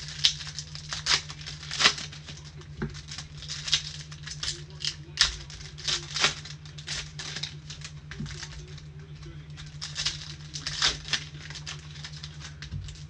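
Foil trading-card pack wrappers crinkling and tearing as they are opened by gloved hands, a rapid, irregular run of sharp crackles over a steady low hum.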